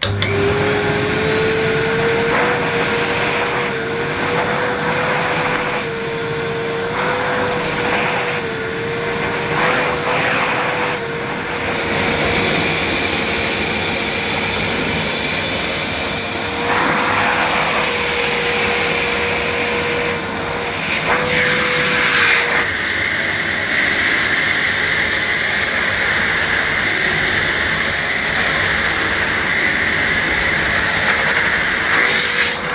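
Electrolux Model 60 cylinder vacuum cleaner with a 300-watt motor, switched on and run on plush carpet as the floor nozzle is pushed back and forth picking up scattered debris. The motor's steady hum rises as it comes up to speed, then wavers as the nozzle moves. About two-thirds of the way through, the hum gives way to a higher, airy hiss.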